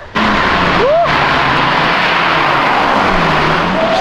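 Nissan 350Z's V6 exhaust running loud at high revs close by, cutting in abruptly just after the start; the revs dip and climb again near the end.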